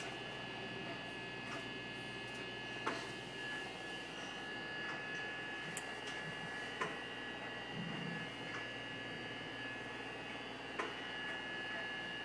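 Steady hum with two high steady tones inside a ship's cabin, with about four faint sharp cracks spread through it: distant gunfire from shore guns, muffled by the closed window.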